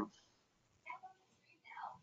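Near silence in a pause between spoken words, broken by two faint, short breathy sounds from the speaker, one about a second in and one near the end.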